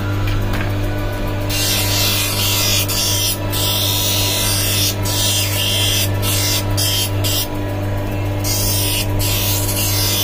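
Lens hand edger's motor humming while a plastic spectacle lens is pressed against its grinding wheel: a harsh hissing grind that starts about a second and a half in and breaks off briefly several times as the lens is lifted and repositioned. The lens is being ground down to size because it is still slightly too big for the frame.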